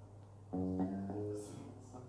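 Yamaha Pacifica electric guitar: two single fretted notes picked one at a time, the first about half a second in and the second about half a second later, each ringing briefly and fading.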